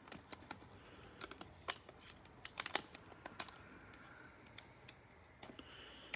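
Foil wrapper of a Panini Mosaic NBA trading card pack being handled and worked open by gloved hands: faint crinkling with scattered sharp little clicks at an irregular pace.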